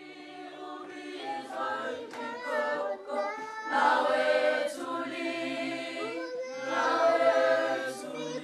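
A children's choir singing, getting louder about four seconds in and again near the end.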